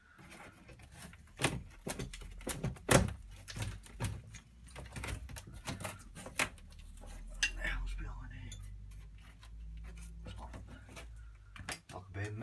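An old wall panel being prised away by hand from a timber beam: a run of clicks, cracks and scraping, with a few sharper knocks, the loudest about three seconds in.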